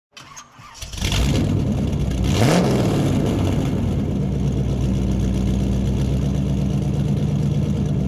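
A car engine starting about a second in, a short rev rising in pitch, then steady idling.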